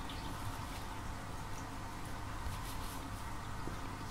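Faint rustling and light ticks of a thin metal crochet hook working fine cotton crochet thread by hand, over a steady low hum and hiss.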